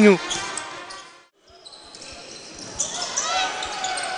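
Basketball game sound from the court and stands: crowd noise and play on the hardwood. It fades out to silence about a second in and then comes back.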